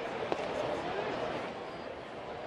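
Ballpark crowd murmur with a single sharp pop about a third of a second in: a fastball smacking into the catcher's mitt on a pitch taken for a ball.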